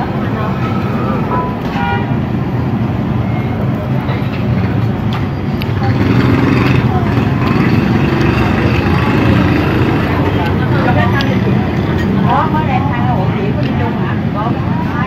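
Steady road traffic with vehicle engines running close by and people talking in the background, getting a little louder about six seconds in.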